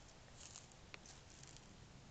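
Near silence, with a few faint, scattered ticks and rustles.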